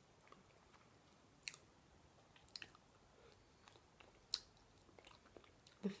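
Quiet chewing of duck leg meat, with a few short, sharp wet mouth clicks, about three of them standing out and the loudest near the end.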